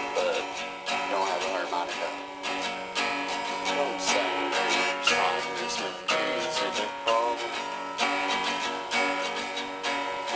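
Steel-string acoustic guitar strummed in steady chords, with a strong accent about once a second, playing an instrumental break with no singing.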